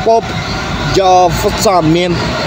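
A man's voice speaking, over a steady low rumble of outdoor background noise.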